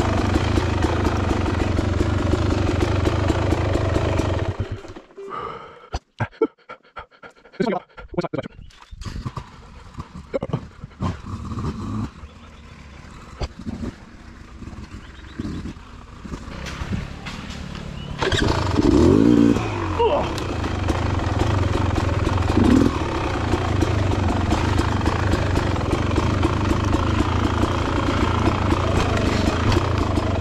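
Dirt bike engine running on the trail. About five seconds in it drops away abruptly to a much quieter stretch with scattered knocks and clicks. Near two-thirds of the way through it revs up with a rising pitch and runs steadily again.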